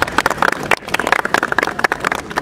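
A small crowd clapping: many separate, uneven hand claps, as at the close of a speech.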